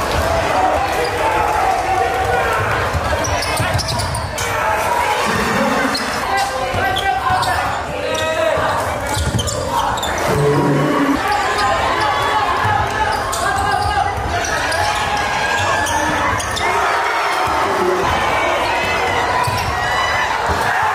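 Live game sound in a gymnasium: a basketball bouncing on the hardwood court as it is dribbled, with spectators' voices echoing through the hall.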